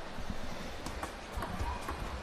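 Table tennis rally: the celluloid-type ball clicking sharply off paddles and the table, several irregular clicks over the second half, against low arena background noise.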